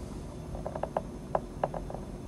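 A quick, uneven run of about ten short creaky clicks, bunched in small groups.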